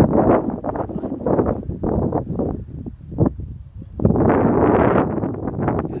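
Wind buffeting the microphone in irregular gusts, with a longer, stronger gust about four seconds in.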